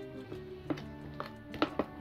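Background music, with a few short taps of a metal ladle against a glass mixing bowl as batter is scooped out, four clicks in the second half.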